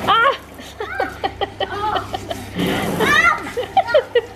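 Children's voices shouting and laughing in a hot tub over background music, while water is thrown against a window pane, with a splash about two and a half seconds in.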